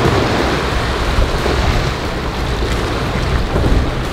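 Single outboard motor of a rigid inflatable boat running under way, mixed with the rushing wash of its hull and breaking waves, with wind buffeting the microphone. The sound is a steady, even rush with a low rumble underneath and no distinct events.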